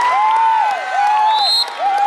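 Football crowd cheering and shouting just after a penalty kick, with one high call repeated over it, each rising and falling, about every 0.7 s.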